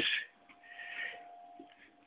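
A short, faint breath or sniff lasting about a second, with a faint steady whine underneath.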